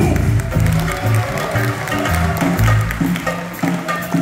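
A live bossa nova group playing an instrumental passage: acoustic guitar, cello and light drum-kit percussion, with low sustained notes under plucked chords and soft rhythmic clicks.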